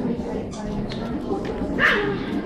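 A Pomeranian gives one short, high-pitched yap near the end, over the murmur of chatter in a large hall.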